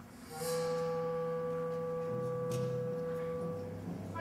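Symphonic band music: one high note held steadily, entering about a third of a second in, over soft low notes that change twice.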